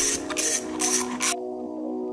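A ratchet wrench clicking in quick strokes, about three a second, as a bolt is run in; the ratcheting stops a little over a second in. Background music with steady held tones plays throughout.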